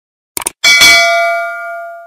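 Subscribe-button animation sound effect: a quick double mouse click, then a bright notification-bell ding that rings on and fades away over about a second and a half.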